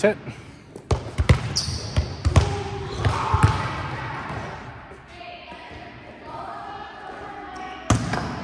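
Volleyballs being struck and bouncing on a gym floor, several sharp smacks in the first few seconds, echoing in a large hall, with distant voices in between. A single hand-on-ball smack of an overhand serve comes just before the end.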